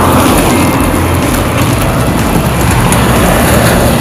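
Steady, loud rushing noise of wind on the microphone and tyres hissing on wet road from a bicycle being ridden in the rain, with a low rumble throughout.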